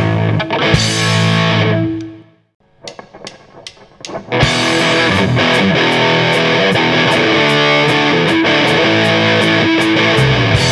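Rock band playing live, with distorted electric guitar, bass guitar and drums. The music cuts out about two seconds in, a few sharp hits sound through the gap, and the full band comes back in about four and a half seconds in on a steady beat.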